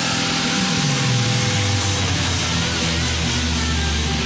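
Rock band playing live: sustained distorted guitar chords over a low note that slides down about a second in and is then held as a deep drone.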